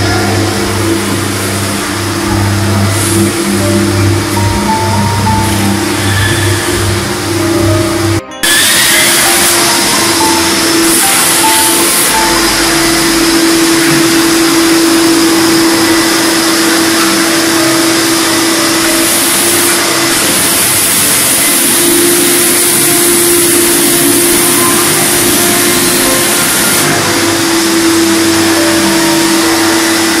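A commercial wet-dry vacuum running steadily as its hose sucks water off a tiled floor, under background music. Before an abrupt cut about eight seconds in, the music plays over the hum of a rotary floor scrubber.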